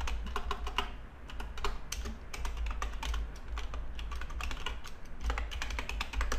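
Typing on a computer keyboard: quick runs of keystrokes broken by short pauses.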